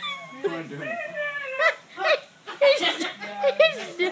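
A person voicing a dog for a hand-shadow puppet, barking in drawn-out calls, with laughter from others.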